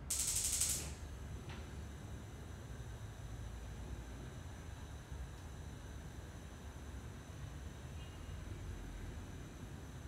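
A short breathy hiss in the first second, then quiet room tone with a faint low hum while the teacher holds a seated pose in silence.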